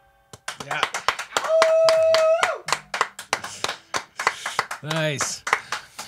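Scattered applause from a few people in a small room, right after a song ends. One held "woo" cheer rises over it about a second and a half in, and a few short spoken words come near the end.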